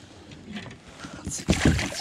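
Water splashing and dripping as a hooked bass is lifted out of the lake beside a kayak, a sudden loud splash about one and a half seconds in after a quieter stretch.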